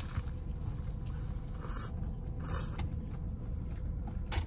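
Close-up eating sounds: chewing a crusty baguette sandwich, with two short crunchy bursts a little before and after the middle, over a steady low rumble.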